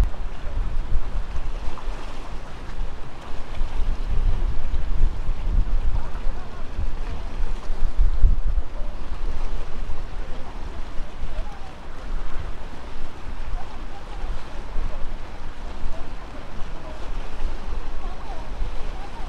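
Strong, gusty wind buffeting the microphone in a low rumble, over the wash of choppy water.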